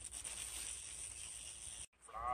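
A steady high hissing whoosh, the sound effect of an animated video intro playing on a phone, cutting off abruptly shortly before the end.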